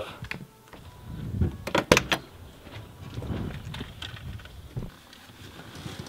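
A few thuds, with a quick cluster of sharp clicks or knocks about two seconds in, over faint low handling noise.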